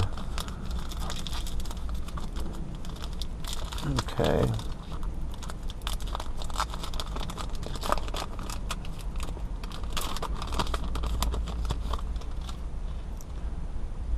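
Baseball card pack wrapper being torn and peeled open by hand, a run of irregular crackly crinkling.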